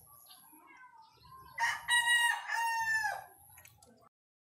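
A rooster crowing once about one and a half seconds in: a single drawn-out crow lasting about a second and a half that drops in pitch at the end.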